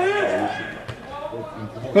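A man's commentary voice trailing off in the first half-second, then faint voices in the background and a single sharp knock about a second in.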